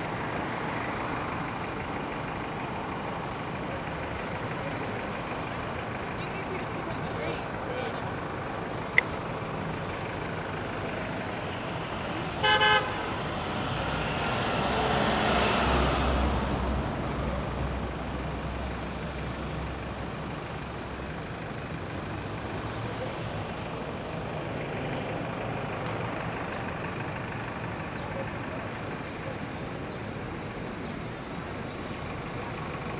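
City intersection traffic: a steady hum of passing cars, a short vehicle horn toot about twelve seconds in, then a school bus passing with a low engine rumble that swells and fades over a few seconds. A single sharp click sounds shortly before the horn.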